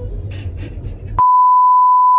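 Low car-cabin rumble, then about a second in a loud, steady 1 kHz test tone, the reference tone of a colour-bars test card, cuts in abruptly and holds.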